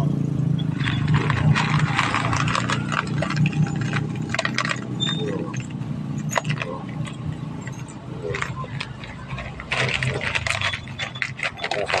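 Metal roofing nails clicking and crunching as they are chewed and handled, in clusters of rapid sharp clicks, over a steady low hum.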